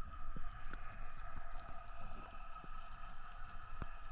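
Muffled underwater ambience picked up by a diving camera: a steady low rumble with a faint steady hum above it, and a few faint clicks.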